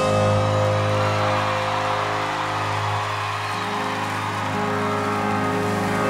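A live band holding a sustained chord, with the audience cheering and applauding over it.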